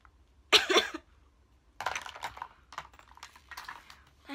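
A short cough close to the microphone about half a second in, then a string of soft clicks and breathy noises.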